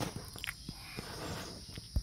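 Light clicks and rustles of hands handling a convertible top's metal rear rail and fabric, over a steady high background hiss, ending in one sharp click.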